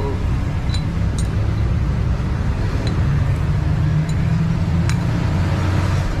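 A steady low engine-like drone in the background, with a few light metallic clicks as scooter CVT drive-pulley parts are handled and fitted.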